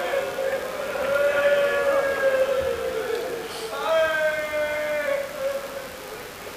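A zakir's amplified voice chanting a masaib lament in long, drawn-out held notes: one long phrase, then a second beginning about four seconds in.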